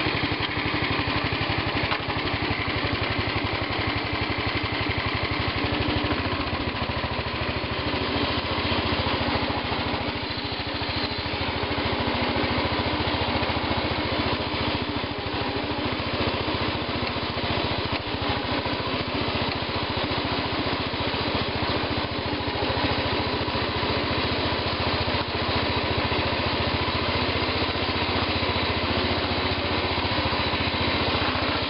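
1970 Sears Suburban 12 garden tractor's Tecumseh single-cylinder engine running steadily while the tractor is being driven.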